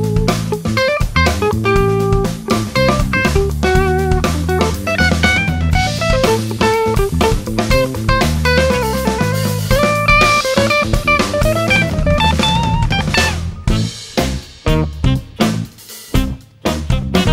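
Electric guitar playing a busy melodic line over a backing track of drum kit and bass. Near the end the music breaks up into short separate hits.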